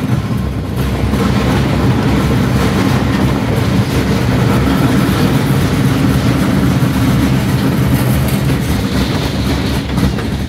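Roller coaster train running along its steel track, heard from on board the front car: a loud, steady rumble and clatter of wheels on the rails.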